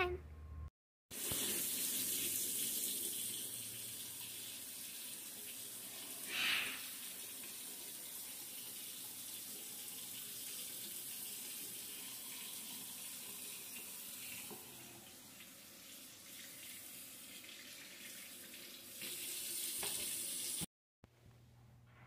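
Bathroom sink faucet running while hands are washed under it: a steady rush of water that stops abruptly shortly before the end. A brief, louder, higher sound comes about six and a half seconds in.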